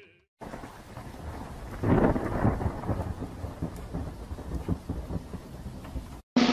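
A loud low rumble about two seconds in, fading away over a steady hiss.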